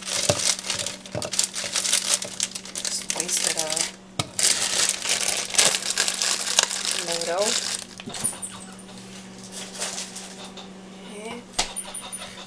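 Plastic bag of frozen mango chunks crinkling and rustling as it is handled, for most of the first eight seconds, then quieter.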